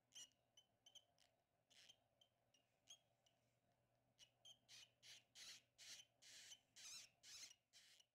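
Faint, high-pitched squeaks from Russian dwarf hamster pups, still blind at about twelve days old: short calls come sparsely at first, then in a quick, almost unbroken string from about halfway through.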